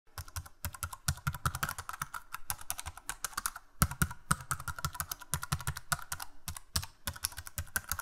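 Computer keyboard typing sound effect: a rapid, steady run of key clicks, many keystrokes a second, laid under on-screen text being typed out.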